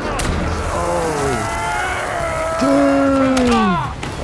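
A man's drawn-out pained cry, held and then falling in pitch near the end, over the clatter of a film fight scene, with a sharp impact right at the start.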